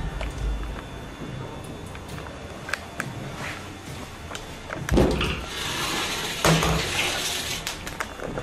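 A low drone with scattered faint knocks, then a sharp thump about five seconds in, followed by a rushing hiss.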